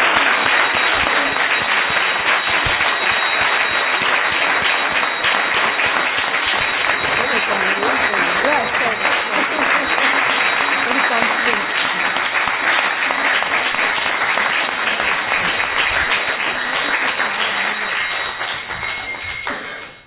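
Audience applauding steadily, dying away just before the end.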